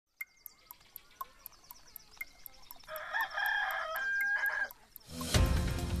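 Steady clock-like ticking, about four ticks a second, under a rooster crowing once about three seconds in. A music jingle with drums comes in just after five seconds.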